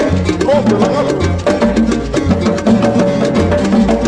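Salsa descarga recording playing: dense, steady hand percussion over a repeating bass line.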